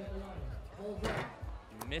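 A basketball free throw striking the rim with a sharp clank about a second in, a missed shot, amid voices and a low, regular thumping beat.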